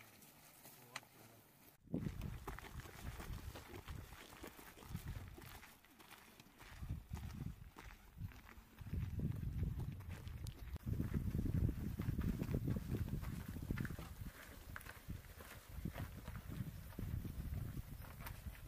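Footsteps crunching irregularly on a gravel track, with wind rumbling on the microphone. This starts suddenly about two seconds in and grows louder in the second half.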